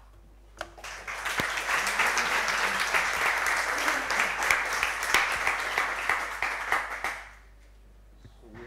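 Audience applauding. The clapping starts about a second in and dies away after about seven seconds.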